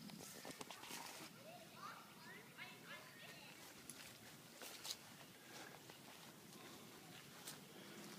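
Near silence: faint outdoor background with a few soft clicks.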